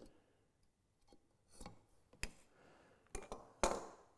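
Knife scoring a short line across a wooden stile against a combination square: soft scratches about a second and a half in and, louder, near the end, with a few light clicks of the metal square and knife on the wood between them.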